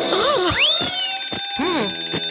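An alarm ringing, high-pitched and rapidly pulsing, starting suddenly. Short startled cartoon-voice cries sound over it, near the start and again near the end.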